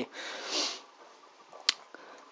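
A man's breath close to the microphone, a soft hiss lasting under a second, then a single sharp click near the end.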